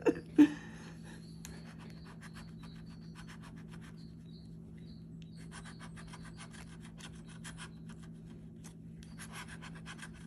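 Scratch-off lottery ticket scratched with a flat handheld scratcher tool: rapid rasping strokes across the card, with a pause about four seconds in before the scratching resumes. Two short thumps come at the very start.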